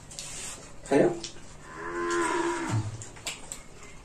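A short knock, then a single drawn-out cow moo that drops low at its end.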